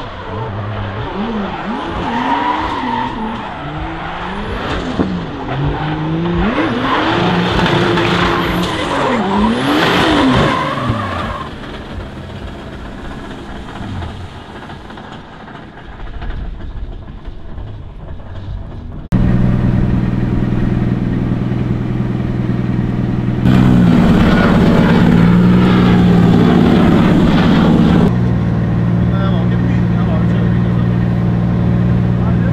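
Drift car engine revving hard again and again, pitch rising and falling, as the car slides through tyre smoke, dying away after about eleven seconds. After a sudden cut about two-thirds of the way in, an engine idles steadily with a low hum, louder for a few seconds near the end.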